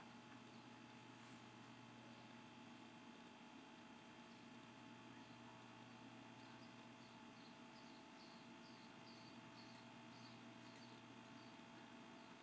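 Near silence: the faint steady hum and hiss of the recording's background, with a faint run of small high ticks midway.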